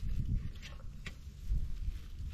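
A stick prodding and scraping into a hole in dry, cracked earth to dig out a frog burrow, with a few faint knocks and a low wind rumble on the microphone.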